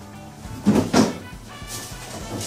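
Freezer drawer being pulled open, with two short knocks close together about a second in, over background music.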